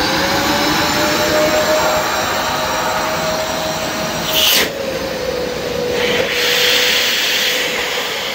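Husqvarna DE120 dust extractor's vacuum motor finishing its spin-up in the first second, then running steadily with a high whine and a rush of air. About four and a half seconds in there is a brief loud rush, after which the motor note settles a little lower.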